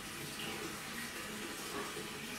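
Water running steadily, as from a tap, out of sight in a small bathroom.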